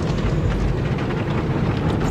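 Automatic car wash heard from inside the car's cabin: a steady rush of spray and foam hitting the car, over a low rumble.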